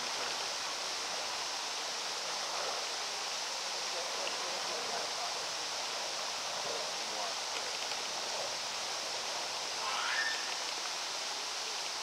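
Steady rushing hiss like running water, with faint distant human voices murmuring over it and a brief louder rising call about ten seconds in.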